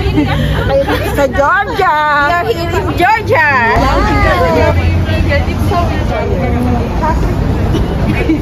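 Several people chattering and calling out in lively, excited voices, with strong up-and-down swoops in pitch in the first half. A steady low rumble runs underneath.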